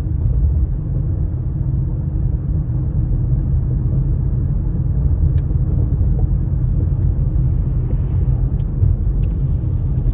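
Steady low rumble of a car's road and engine noise heard from inside the moving cabin, with a few faint ticks in the second half.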